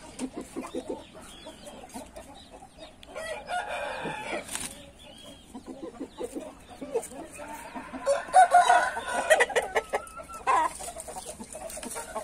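Índio game roosters clucking, with a rooster crowing about three seconds in and a longer, louder crow from about eight seconds in.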